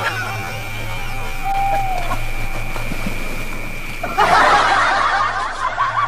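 A steady thin high tone and a low hum, then a sudden burst of laughter about four seconds in.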